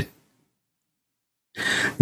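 Dead silence, then about one and a half seconds in a man's short audible breath, just before he speaks again.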